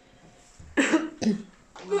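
A person coughing twice in quick succession, about a second in, the first cough the louder.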